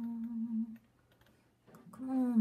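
A woman humming one steady low note that stops under a second in, followed by near silence with a few faint clicks near the end.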